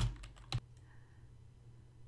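A few sharp clicks at a computer keyboard in the first half-second, then a faint steady low hum.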